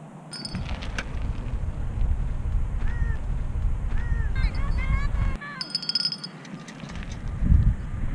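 Low rumbling wind noise on an outdoor camera microphone, cutting out for about a second and a half midway. A few short honk-like calls are heard faintly above it about three to five seconds in.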